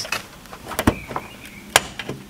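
Plastic push-pin retainers being pulled straight up out of a car's plastic radiator shroud: two sharp clicks, about a second in and near the end, with lighter plastic ticks and rustling between.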